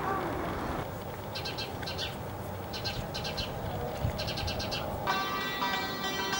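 Short, high, rapidly pulsed chirping trills from a small animal, four bursts spread over a few seconds, over a faint hiss. About five seconds in, a santur starts playing a run of struck notes.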